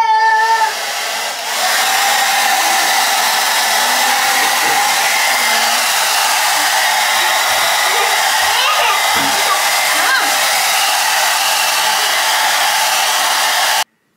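Hand-held hair dryer blowing, a steady loud rush of air with a faint motor whine, starting a little quieter and stepping up to full strength about two seconds in. It cuts off abruptly just before the end.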